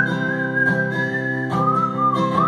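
A person whistling a melody into the microphone over a strummed acoustic guitar: one held whistled note that wavers slightly, then a step down to a lower note about one and a half seconds in.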